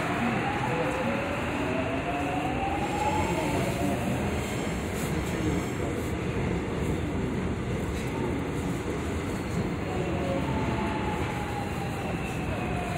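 Korail Line 1 electric multiple unit creeping forward at low speed over steady rumbling running noise. The traction motor whine rises in pitch as it pulls ahead and falls again near the end as it brakes: a short re-positioning move after stopping short of its mark.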